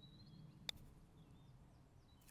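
Near silence, broken about two-thirds of a second in by a single short, sharp click: a putter striking a golf ball.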